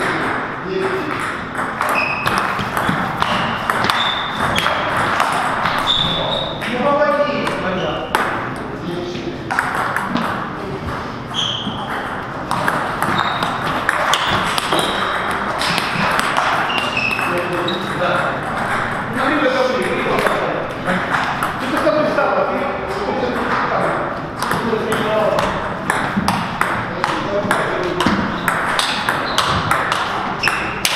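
Table tennis ball being hit back and forth in rallies: quick sharp clicks as the plastic ball strikes the rubber paddles and bounces on the table, repeating throughout.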